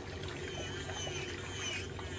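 Electric nail drill (e-file) running with a cone bit grinding down a thick, yellowed ram's-horn big toenail: a steady motor hum with the hiss of the bit on the nail.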